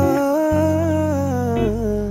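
Background score: a wordless hummed vocal holds one long note that rises slightly and then falls, over sustained low instrumental notes.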